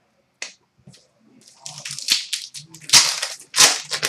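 Trading-card pack wrapper crinkling and tearing: a string of short, sharp crackles that thicken about halfway through, with the loudest rips near the end.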